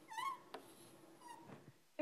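Chalk squeaking on a blackboard: a short, wavering squeak near the start, a sharp tap of chalk about half a second in, and a fainter squeak later.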